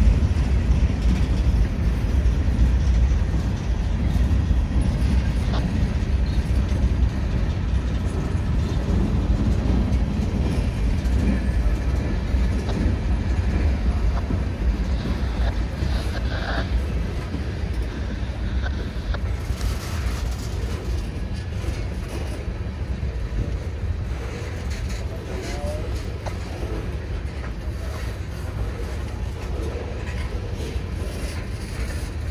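Freight cars of a passing CSX manifest train rolling by on the rails: a steady low rumble with wheel clatter, slowly growing quieter.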